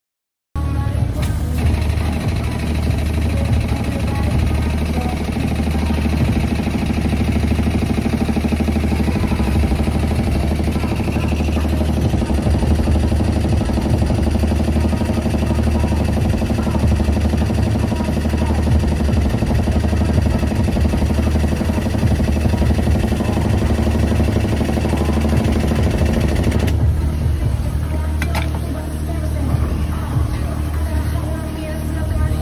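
A steady, loud machine drone with a strong low hum, unbroken after a cut about half a second in; its character changes slightly near the end.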